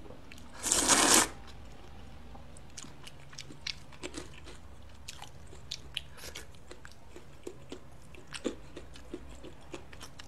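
One loud slurp of thin wheat noodles (xianmian) drawn into the mouth, starting about half a second in and lasting about half a second. After it comes close-miked chewing with many small wet clicks and smacks.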